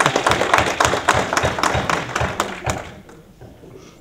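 Audience applauding, fading out about three seconds in.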